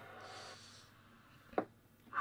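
Faint hiss fading away, then one short click about one and a half seconds in as a Cobra 148 GTL-DX CB radio is switched from receive to transmit.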